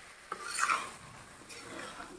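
Metal spatula stirring and scraping fish pieces in thick masala around a metal kadhai as the fish is fried in the spice paste. A sharp clack about a third of a second in is followed by a louder scrape, then softer scraping near the end.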